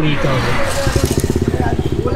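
A motorcycle engine running close by, a fast, even low thudding that sets in under a second in.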